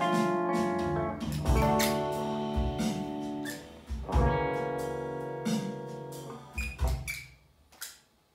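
Semi-hollow electric guitar through an amplifier playing the closing chords of a blues song. Chords are struck and left to ring out, then a few short strums come near the end before the sound fades away.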